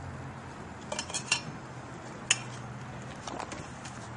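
Minivan power sliding door opening: a faint steady motor hum with a few light clicks from the door mechanism.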